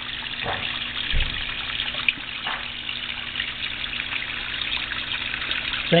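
Small pond waterfall splashing steadily into a koi pond, an even trickling rush of water, with one low thump about a second in.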